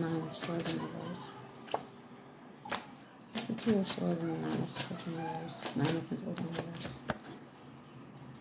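Tarot cards being handled and flipped through, making a quick series of sharp paper snaps and clicks that stop shortly before the end.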